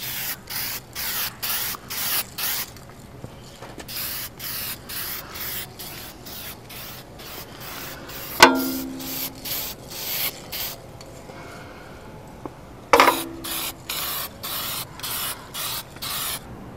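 Aerosol spray-paint can hissing in quick short bursts, about two to three a second in runs with pauses, as flat black paint is sprayed onto a wooden rifle stock. Two brief louder knocks come about halfway through and again near the end.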